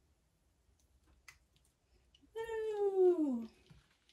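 A domestic cat meowing once: a single drawn-out call of about a second that falls in pitch, a little past halfway through.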